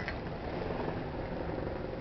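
Steady low rumble of a Star Ferry under way: the ferry's diesel engine and the noise of water along the hull.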